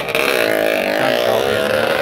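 Drag-racing motorcycle engine revving hard as the bike launches off the start line and accelerates away down the strip. The pitch dips slightly at first, then holds high.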